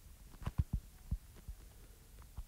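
A stylus tip tapping and knocking on a tablet's glass screen while handwriting, a run of irregular light taps.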